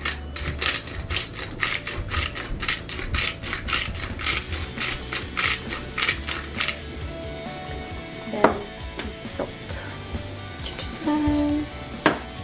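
Hand-twisted pepper grinder grinding peppercorns: a fast, even run of gritty clicks, about four a second, for close to seven seconds, then it stops. A single knock follows a little later.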